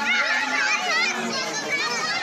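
A crowd of children shouting and calling over one another, many high voices rising and falling in pitch.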